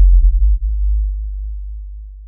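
A deep sub-bass boom, a cinematic hit sound effect. It sounds loud at first, with a brief rumble on top, then fades steadily over about two seconds.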